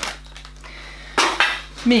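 A baby activity toy with plastic rings, sealed in a plastic bag, being handled and set down: a sharp click at the start, then a short, loud clattering rustle about a second later.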